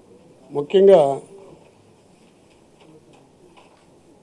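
A man's voice at a microphone: one short utterance with a falling pitch about half a second in, then a pause with only faint room tone.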